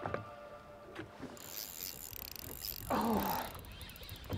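A short vocal exclamation from a woman about three seconds in, as she sets the hook, over faint wind and water noise.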